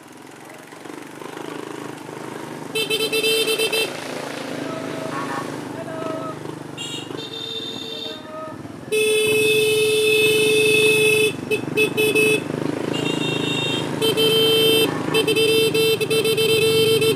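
Motorbike horn honking repeatedly over a steady running motorcycle engine: short blasts early on, then a long blast of about two seconds that is the loudest sound, followed by a string of quick toots and another longer blast near the end.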